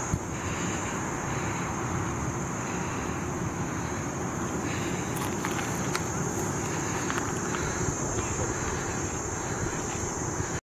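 Steady wind noise on a handheld camera's microphone, with a thin, steady high whine behind it and a couple of faint clicks.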